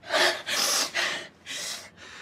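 A person breathing hard in four sharp, noisy gasps about half a second apart.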